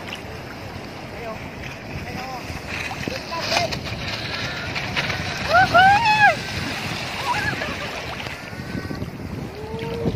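Shallow sea surf washing and splashing around the microphone, with people's voices calling out over it; a few loud rising-and-falling shouts come about six seconds in, the loudest sound here.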